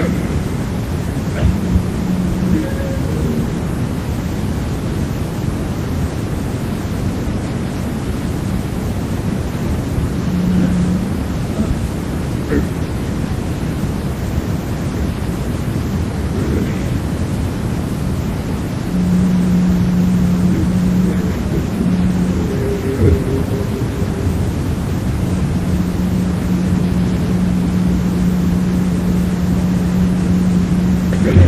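Lo-fi cassette demo recording of a grindcore band playing: a dense wall of distorted noise and tape hiss in which the instruments blur together. A low note is held for long stretches, mostly in the second half.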